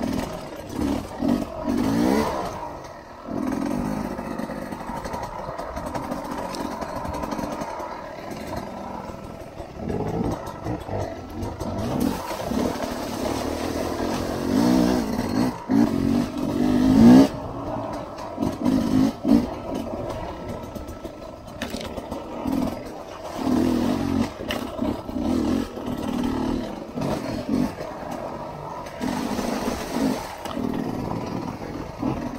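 Sherco 250 enduro dirt bike engine revving in short, uneven bursts on and off the throttle, with scattered knocks from the bike over rough trail.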